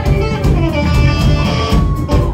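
Rock band playing live at loud volume through a club PA: electric guitar and bass over drums, with a held guitar note in the second half.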